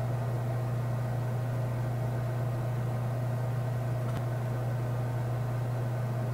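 Steady low hum of room noise, unchanging, with one faint click about four seconds in.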